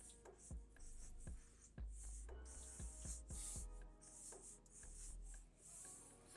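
Black marker tip scratching across paper in short, repeated strokes, over quiet background music.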